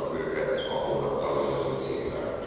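A man's voice speaking over a microphone and PA system, echoing in a large hall.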